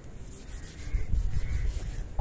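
Soft, irregular rubbing and scratching noise over a low rumble.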